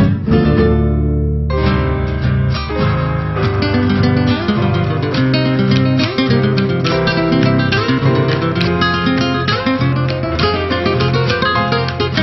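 Guitar-led Argentine folk music without singing: a strummed chord rings out at the start, then plucked and strummed guitar playing with a strong bass line carries on steadily.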